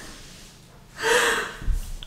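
A woman's excited, breathy gasp of delight about a second in.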